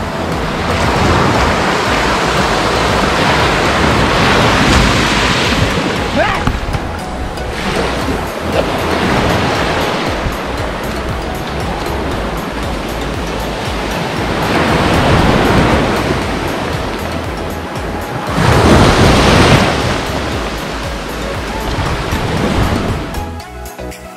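Small waves breaking and washing up over sand at the water's edge, swelling louder several times, loudest about three-quarters of the way through.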